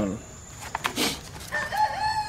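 Rooster crowing: one long held call that begins about one and a half seconds in and carries on past the end, dropping slightly in pitch.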